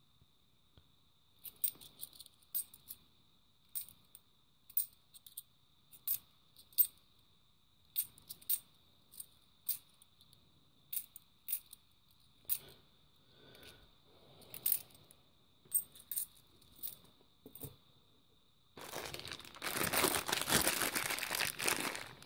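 Metal 50p coins clicking and clinking against each other as they are handled and checked one at a time, in sharp irregular clicks about once or twice a second. Near the end, a plastic coin bag crinkling as it is handled.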